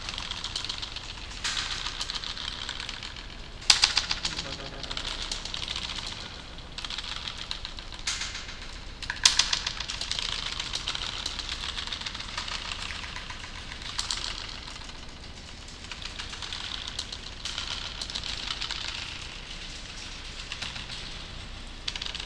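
Computer keyboard typing, an irregular run of key clicks with a few harder strokes, about four seconds in and again about nine seconds in.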